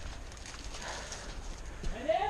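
Footsteps and the rustle of clothing and gear from a person walking over grass, with a voice starting just before the end.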